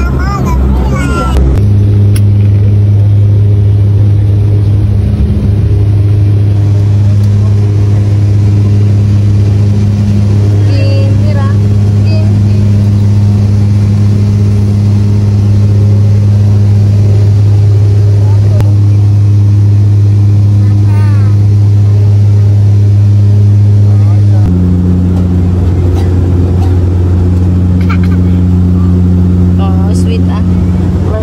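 Turboprop airliner's propeller engines heard from inside the cabin: a loud, steady low drone with a constant pitch. The tone changes abruptly twice, about a second and a half in and again near the end.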